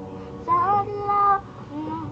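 A boy singing with his own acoustic guitar accompaniment. The guitar rings alone at first, then about half a second in he sings a short line, followed by a brief note near the end.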